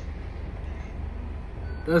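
Car engine idling: a low, steady rumble with an even pulse.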